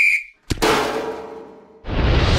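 Sound effects from an animated logo sting: a whistle blast cuts off just after the start. About half a second in comes a sharp hit, with a noisy tail and a low ringing tone fading away, then a loud burst of noise breaks in near the end.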